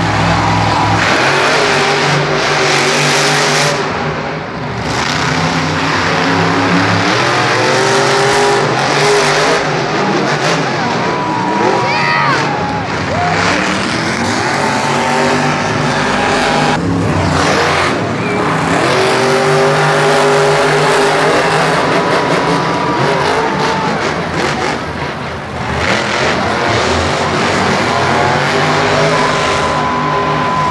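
Monster truck supercharged V8 engines running and revving during racing, loud and continuous. The engine pitch climbs and falls repeatedly as the throttle changes.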